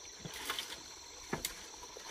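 Two light knocks about a second apart over a quiet outdoor background: wooden fence rails being handled.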